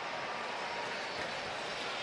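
Steady background crowd noise in an ice hockey arena, an even wash with no distinct cheers or claps.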